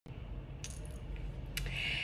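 A few faint, light metallic clinks and handling rustle over a low steady hum, as a long-haired cat is lifted and held.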